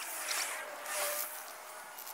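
Outdoor sound fast-forwarded ten times along with the footage: a rushing hiss that swells about a second in.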